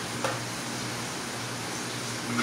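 Lard sizzling steadily on a hot steel plough-disc griddle over a gas burner, with one light tap of a metal spoon on the disc about a quarter second in.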